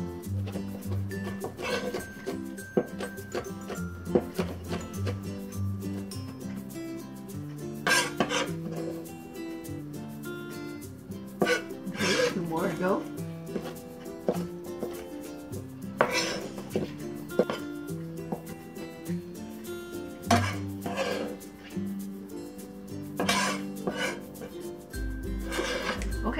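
Background music, with a cleaver knocking on a wooden cutting board every few seconds as Chinese sausage is diced.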